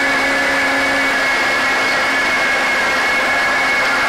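Countertop blender running steadily, its motor whine holding one even pitch as it purées a thick sauce.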